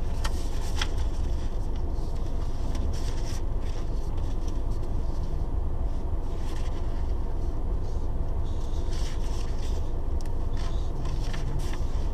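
Inside a stationary car's cabin: the engine idles with a steady low rumble while sheets of paper are handled, rustling on and off every second or two.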